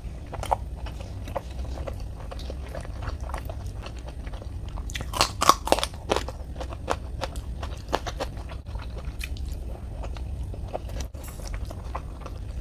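Close-up chewing of rice and egg curry, with many small wet mouth clicks. About five seconds in comes a short run of louder crunchy bites, which fits a bite into a raw green chili.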